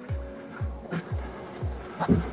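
Background music with a steady kick-drum beat, about two and a half beats a second, under sustained held chords.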